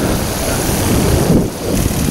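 Parajet Maverick paramotor's two-stroke engine and propeller running steadily in flight, mixed with wind buffeting the microphone.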